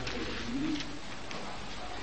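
A pause in a man's preaching: low steady room noise, with one faint short low hum rising and falling about half a second in.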